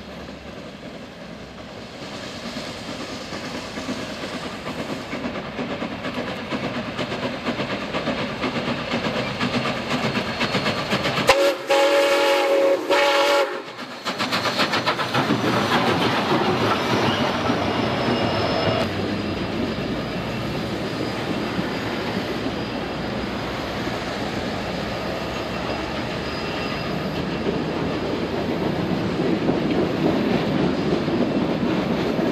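A train rolling past with steady wheel and rail noise that builds over the first half, and a loud horn blast lasting about two seconds near the middle.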